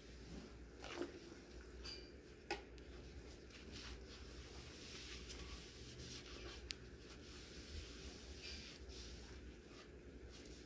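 Faint rubbing and squishing of a wet, soapy paper towel wiping a wooden bowl in sink water, with two light knocks in the first three seconds.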